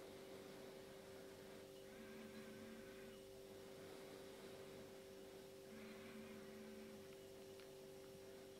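Near silence: room tone with a faint, steady two-note hum.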